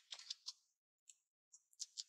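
Faint crackling of dry leaves under a baby macaque's steps: a quick run of short crisp clicks at the start and another run near the end.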